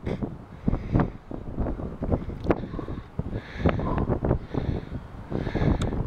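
Wind buffeting the camera's microphone, gusting unevenly.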